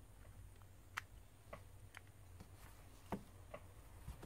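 Faint, scattered light clicks of metal tweezers against a smartphone's small internal parts and frame, about five in four seconds, over a low steady hum.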